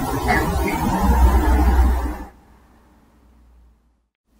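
A rumbling noise of unknown origin, about two and a half seconds long, deepest and loudest between one and two seconds in, then dying away. The ghost hunters take it as a reply to their call for a spirit to make a noise.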